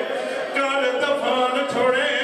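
A man chanting a noha, a mourning lament, unaccompanied, through a microphone and loudspeakers, in long sung phrases.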